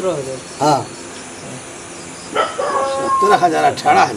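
Men's voices talking, broken by a pause of about a second and a half in the middle where only quiet background remains.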